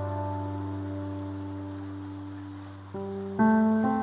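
Slow, calm piano music: a held chord fades away, then new notes are struck near the end, over a steady soft hiss of falling rain.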